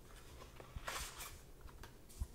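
Faint rustling of a small cardboard box of powdered fabric dye being opened and handled, with one brief, louder rustle about a second in.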